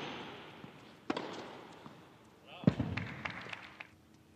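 Two hard tennis-ball strikes, about a second and a half apart, each ringing on in the hall's echo; the second is the louder.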